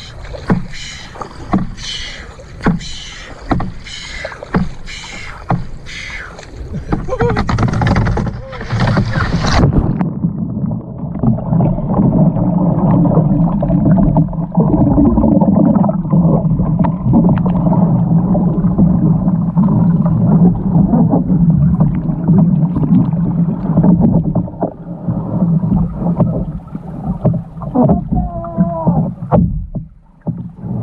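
Kayak paddle strokes splashing in lake water beside a canoe, about two a second. About ten seconds in, the sound suddenly goes dull and muffled as the canoe capsizes and the microphone goes under water, leaving a loud, steady underwater churning.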